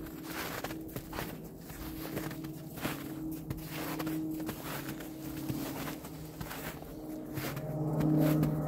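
Footsteps crunching through snow at a steady walking pace, under the steady drone of aircraft passing overhead, which swells louder near the end.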